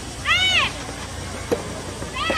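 One high, shrill shouted call, rising then falling in pitch, followed about a second later by the sharp pop of a soft tennis racket striking the rubber ball.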